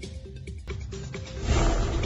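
News-bulletin intro music with a fast ticking beat, swelling about a second and a half in into a loud rushing whoosh that leads into the first headline.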